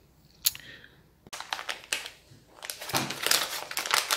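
Plastic instant-noodle packet being handled and crinkled by hand: a couple of sharp clicks, then a busy, crackly rustle that grows denser in the second half.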